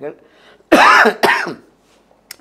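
A man clearing his throat with a loud cough in two quick bursts, starting under a second in.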